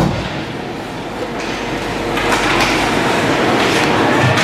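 Indoor ice rink during a hockey game: a knock at the very start, then a steady wash of rink noise that grows louder about two seconds in, with a few sharp scrapes or knocks.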